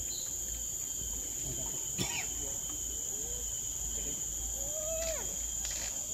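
Steady, high-pitched chorus of tropical forest insects, with a single sharp knock about two seconds in.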